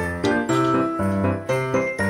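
Background music: a festive tune with jingling bells over a bass line, moving in a steady rhythm of short notes.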